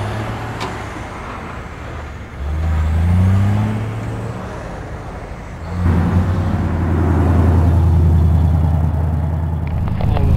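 Semi-truck diesel engine revving up with a rising pitch as it pulls away, then a louder, steady engine drone of a vehicle close by from about six seconds in.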